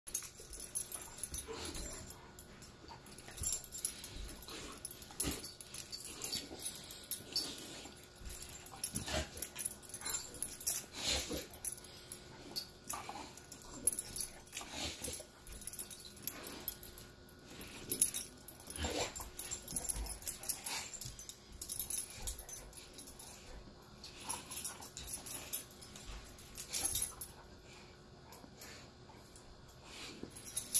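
A cane corso and a puppy play-fighting, mouth to mouth: irregular short bursts of huffing, wheezy breaths and mouthing noises, one or two a second.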